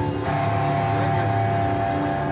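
Live heavy metal band playing: distorted electric guitars and bass holding long droning notes over drums and cymbals, moving to a new held note just after the start.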